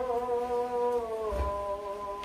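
A slow melody of long, steady held notes, stepping down in pitch a little past the middle, with a soft low thump at that moment.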